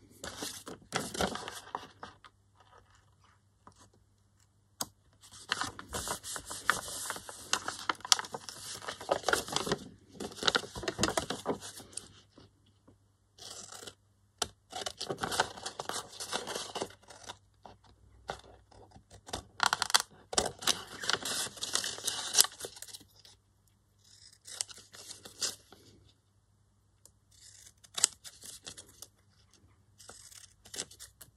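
Scissors cutting through paper, with the paper rustling as it is handled, in about six stretches of one to six seconds with short pauses between.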